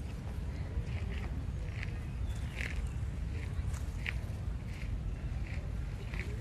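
Young long-tailed macaques squeaking while they play-fight: short high squeaks, about eight of them spread through a few seconds, over a steady low rumble.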